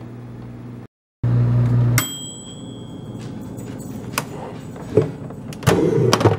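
Microwave oven running with a steady low hum that stops about two seconds in with a single ringing ding of its mechanical timer bell, marking the end of the cooking time. A few clicks follow, then a louder clatter of the door latch as the door is opened near the end.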